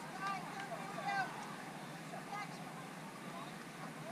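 Distant voices calling out across a ball field. There are two short shouts, one near the start and one about a second in, over steady outdoor background noise.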